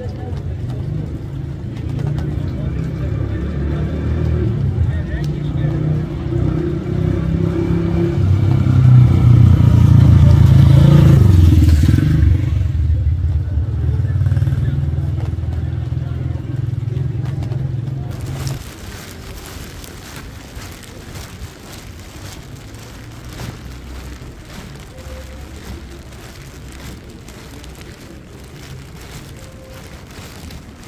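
Low rumble of street traffic that swells to its loudest about ten seconds in, with a falling pitch as something passes close, then cuts away about eighteen seconds in to the quieter patter of rain on a wet street.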